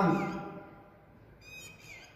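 A short, faint, high-pitched squeak near the end, with a slight downward slide: a marker squeaking on a whiteboard as it writes.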